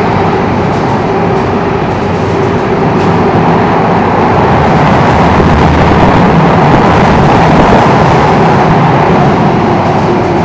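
Steady running noise heard from inside a Singapore MRT train car moving between stations: a low rumble of wheels on track with a steady hum from the traction motors, swelling slightly in the middle.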